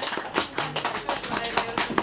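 Small audience clapping at the end of a song, with voices talking over it.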